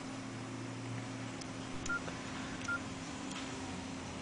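Nokia N95 8GB keypad tones: two short beeps about a second apart near the middle as its keys are pressed, over a faint steady hum.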